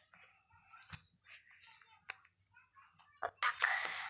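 Faint rustling of a doll's clothing being handled as an arm is worked into a sleeve, with a small click about a second in and a louder stretch of rustling near the end.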